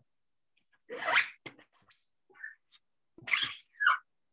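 Small card used as a squeegee, scraped across a screen-printing mesh in an embroidery hoop to push ink through onto paper: two short scraping strokes, about a second in and again a little past three seconds, with light ticks between.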